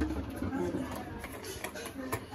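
Mostly faint speech in a small kitchen, with a low rumble of handling noise in the first half-second. There is no clear non-speech sound; the water pour into the cooker has not yet begun.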